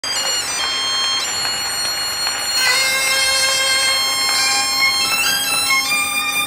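Instrumental Breton traditional dance music for a suite bigoudène. Held melody notes play over a steady low drone, and a new, fuller phrase comes in about two and a half seconds in.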